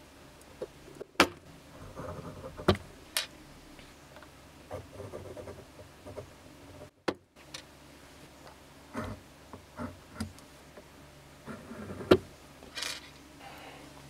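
Metal tools and a thin gold wire being handled at a drawplate and a wooden workbench: scattered sharp clicks and knocks, the loudest about a second in, around three seconds in and near the end, with lighter taps and rustling between.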